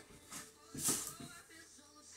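Two soft rustles of a peeled banana being handled as its peel and strings are pulled away, the louder one about a second in, over low room noise with a faint steady hum.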